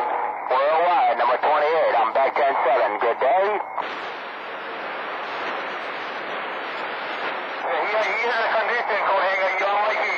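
CB radio receiving other stations: voices that are hard to make out over band static, dropping to plain static hiss about four seconds in, with voices coming back in about eight seconds in.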